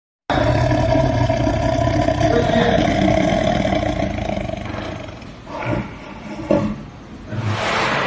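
Tiger roaring: one long, loud roar that trails off about halfway through, followed by a couple of short sounds.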